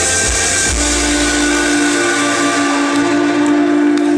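Live rock band ending a song in a loud wash of distorted electric guitar. The drums and low end drop out within the first two seconds, leaving one steady, held guitar tone ringing on.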